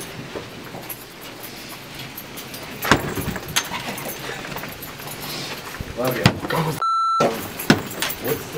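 Handling noise of people walking with bags and luggage: scattered clicks and knocks, the sharpest about three seconds in. A short single-tone censor bleep cuts in near the end.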